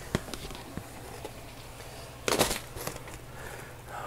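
Handling clatter as a plastic tray is set down on a glass tabletop: a sharp click near the start and a few faint ticks, then a brief rattle of several knocks just past halfway.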